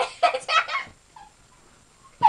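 A girl's voice making a few quick, choppy non-word sounds in about the first second, then a pause.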